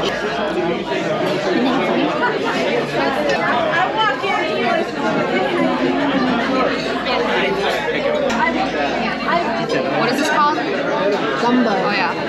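Steady chatter of many overlapping voices in a busy restaurant dining room, with no single voice standing out.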